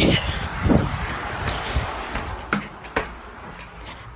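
Rustling and a few knocks of a phone being handled and carried while it records, fading out after about three seconds.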